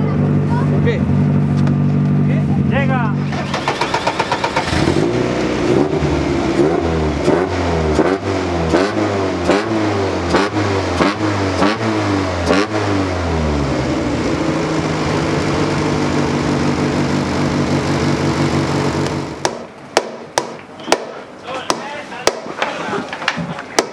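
Race car engine idling, then blipped repeatedly in quick rises and falls, about one and a half revs a second, for about ten seconds before settling back to a steady idle. A few sharp knocks come near the end.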